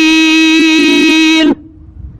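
A man chanting a line of Quran recitation, holding one long steady note that stops about one and a half seconds in. Faint low room noise follows.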